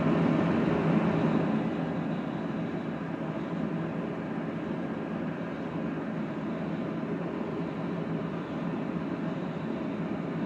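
Everlast 256Si inverter welder idling with nothing connected to its output, its cooling fan running as a steady noise that drops a little in level about a second and a half in.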